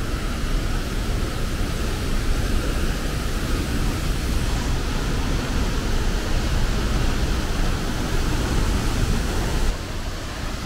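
A large waterfall pouring into a rocky pool, heard close up as a steady, loud rush of falling water.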